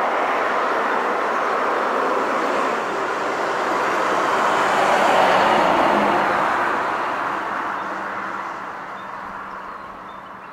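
A car or other road vehicle passing by: engine and tyre noise that swells to its loudest about five seconds in, then fades away.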